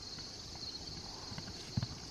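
Hoofbeats of an unridden horse running on grass: faint, dull thuds that grow stronger in the second half.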